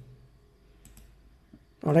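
Faint computer mouse clicks, a couple close together about a second in, over quiet room tone.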